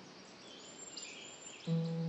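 Soft bird chirps over a faint nature-sound bed during a lull in the meditation music; near the end a low sustained musical note comes back in.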